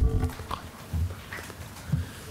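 Three dull, low thumps about a second apart, over faint room noise.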